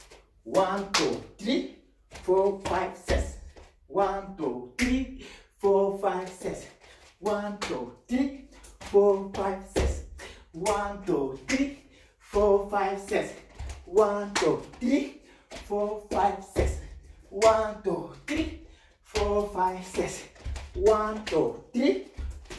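A man's voice chanting short rhythmic phrases, about one a second, while he dances, with thuds of bare feet on a wooden floor between them.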